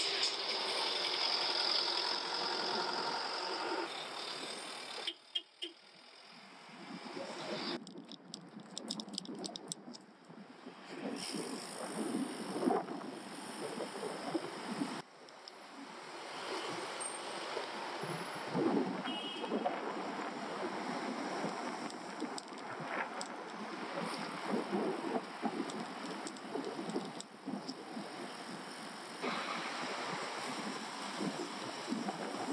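Town street traffic and road noise heard from a moving bicycle, with cars and a truck running close by. The sound changes abruptly several times, as short stretches are cut together.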